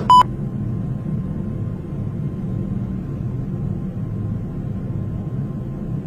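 A short, loud test-tone beep, then a steady low rumble.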